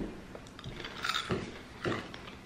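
Mouths chewing candy-coated popcorn, with a few soft, irregular crunches as the hard sugar coating is bitten through.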